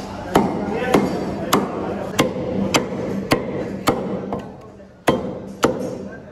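Meat cleaver chopping through a rack of mutton ribs on a wooden log chopping block: about ten sharp strokes at a steady pace of nearly two a second, with a brief pause shortly after the middle.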